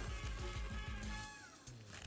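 Quiet background music: held tones over a low, regular beat, with one note sliding down about one and a half seconds in.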